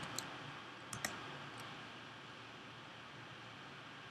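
A few faint clicks from computer input, two close together about a second in, over a low steady room hiss.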